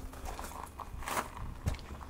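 Footsteps on a concrete path: a few scuffing steps of someone walking.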